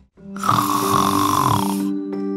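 A woman's long, breathy sigh lasting about a second and a half, over background music that starts at the same moment.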